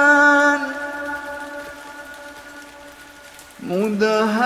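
Melodic Quran recitation: the reciter's long held note fades away in the first second. A faint, even rain hiss fills the pause, and near the end the voice starts a new phrase that rises in pitch.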